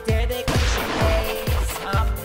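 A starter pistol shot about half a second in, over a hip-hop backing track with a steady, repeating kick drum.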